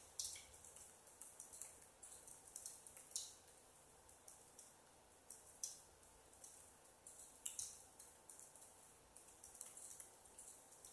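Near silence: faint room tone with soft, irregular clicks about once a second.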